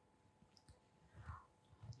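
Near silence: quiet room tone with a faint small click a little past a second in.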